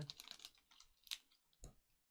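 A few faint, short clicks and ticks of trading cards being handled by fingers, close to near silence.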